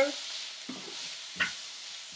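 Onions, peas, corn and carrot frying in oil in a cast-iron pan: a steady, fairly quiet sizzle, with the spatula scraping the pan just under a second in and one sharp knock of the spatula against the pan about a second and a half in.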